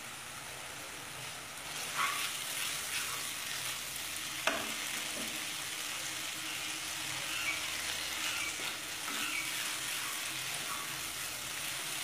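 Onion-and-spice masala sizzling in hot oil in a nonstick pan, stirred with a wooden spatula: a steady frying hiss, with scraping strokes from about two seconds in and a single sharp knock partway through.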